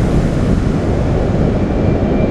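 Wind rushing over the microphone of a skater's body-worn camera at racing speed: a loud, dense, steady rumble with no clear tones.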